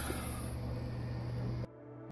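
A steady low mechanical hum that cuts off suddenly near the end, leaving a moment of near silence.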